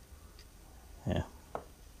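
A couple of faint, short clicks from small metal tools being handled, an adjustable parallel and a screwdriver, over quiet room tone.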